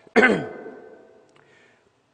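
A man clearing his throat once, just after the start; the sound falls in pitch and fades out within about half a second.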